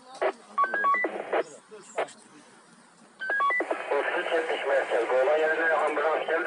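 Police two-way radio traffic: a few clicks and a quick run of short beeps at stepped pitches, then about three seconds in another beep run followed by a voice talking over the radio.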